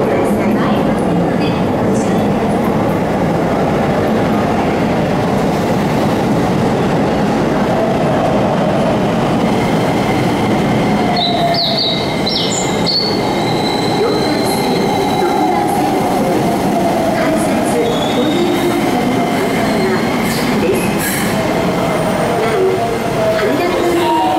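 Keikyu electric train running into the station platform and slowing to a stop, with a steady loud rumble of wheels and motors. It gives a few high-pitched squeals about halfway through as it brakes.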